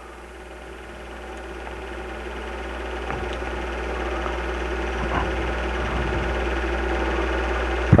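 Steady motor hum and whir of a film projector running, with a low drone under a set of even, level tones, swelling slowly in loudness.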